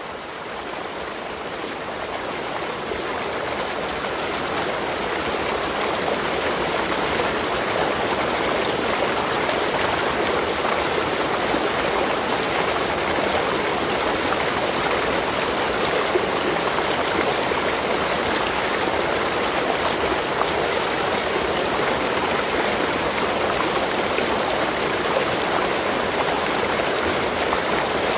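Steady sound of running, splashing water. It fades in over the first few seconds, then holds even.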